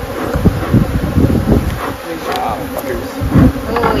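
Honeybees buzzing around an opened hive, with irregular low thumps and bumps throughout.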